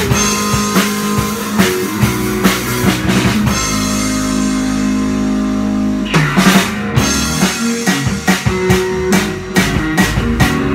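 Rock band rehearsing, electric guitar and drum kit playing. About three and a half seconds in, the drum beat drops out under a held, ringing guitar chord. A burst of drum hits just after six seconds brings the beat back.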